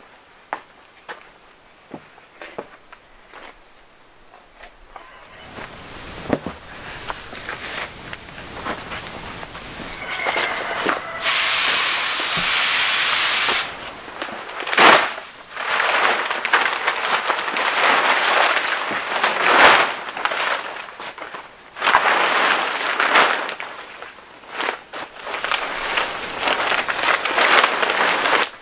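Greenhouse plastic sheeting crackling and rustling in uneven bursts as it is handled and spread over a raised bed. Before it starts there are a few seconds of faint clicks.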